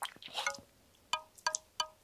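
Light chime notes: about five short ringing tinkles spread over two seconds.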